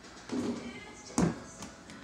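A small basketball shot at a mini arcade hoop strikes the hoop with one sharp, loud knock just over a second in, then drops back into the game's return ramp.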